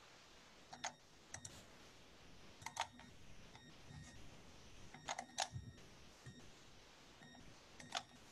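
Faint computer mouse clicks while a screen share is started: a handful of sharp clicks spaced a second or two apart, some in quick pairs.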